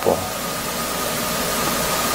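Steady, even hiss of background noise with a faint, thin high whine running through it.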